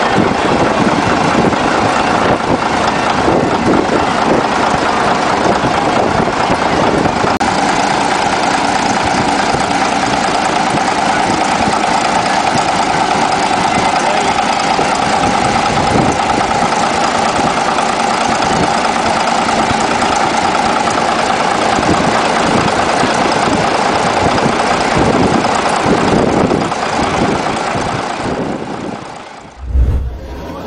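Caterpillar D8 crawler tractor's diesel engine running steadily, fading out near the end.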